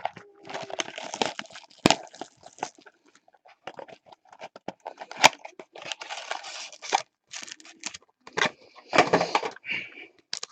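Foil wrappers of Bowman Chrome trading-card packs crinkling and tearing on and off as packs are handled and ripped open, with a few sharp clicks.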